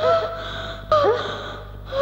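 Women's startled gasping cries: two short breathy outbursts about a second apart, over a steady low hum.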